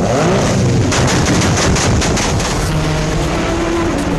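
Race car engine revving, its pitch rising and falling, with a sudden rush of noise about a second in.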